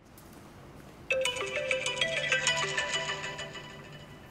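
Mobile phone ringtone playing a short melodic tune, starting about a second in and fading near the end: an incoming call.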